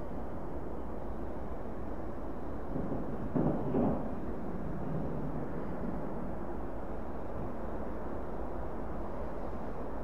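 Distant jet-engine rumble of an Airbus A340-300's four CFM56 engines at takeoff power during the takeoff roll, steady with a brief louder swell about three seconds in.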